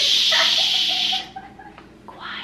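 A woman's long, breathy exhale blown out through the mouth, a loud hiss-like rush of air that stops a little over a second in.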